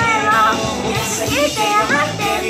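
A girl's voice singing in Spanish over a recorded pop backing track.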